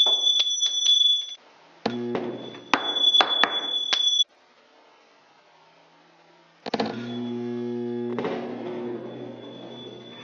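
Electromagnetic ring launcher's solenoid buzzing with a mains hum and a high whine in bursts while its button is held, with sharp clicks. After a near-silent gap of about two seconds, the buzz starts again about two-thirds of the way in and fades toward the end.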